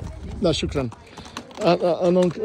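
A horse walking on a gravel path, its hooves giving irregular clopping steps, with a voice talking over them.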